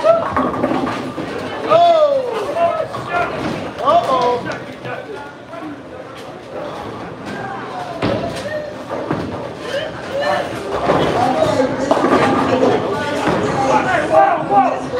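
Voices talking in a large, echoing bowling alley hall, with one sharp knock about eight seconds in.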